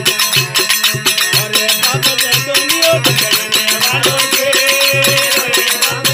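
Rajasthani desi veena bhajan music: a plucked veena over a pulsing low drone, with jingling percussion keeping a fast, steady rhythm. A pitched melodic line is held from about four seconds in.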